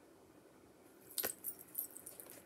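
Small items being handled: quiet at first, then a sharp click a little after a second in, followed by light, high rustling and clicking.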